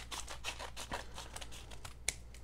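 A metal blade cutting open a padded paper mailer: a rapid, irregular run of small crisp crackles and snicks as the paper gives.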